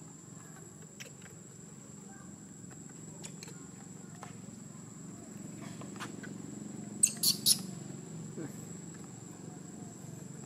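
Outdoor background: a steady high thin tone over a low murmur, with faint scattered clicks and three short, sharp, high-pitched sounds in quick succession about seven seconds in.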